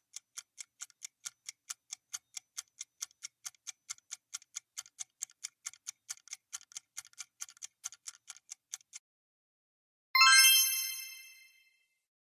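Quiz countdown-timer sound effect: rapid clock-like ticking, about four ticks a second, that stops as the count runs out. Then a bright chime rings out and fades, marking the reveal of the correct answer; the chime is the loudest sound.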